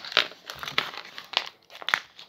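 Plastic wrapping crinkling in the hands in a few sharp, irregular crackles as a small bag is opened.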